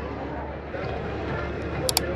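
Steady harbour-side background noise with faint distant voices, and two sharp, high clicks just before the end.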